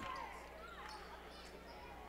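Faint sound of a basketball game in play in a gymnasium, with a ball being dribbled on the hardwood court.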